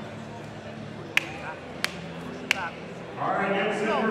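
Three sharp knocks about two-thirds of a second apart, the first and last with a brief ring, over low hall chatter; near the end the crowd chatter swells louder.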